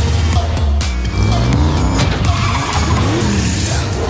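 Trailer music with a heavy bass over sports car engines revving and tyres squealing, the engine pitch sweeping up and down several times.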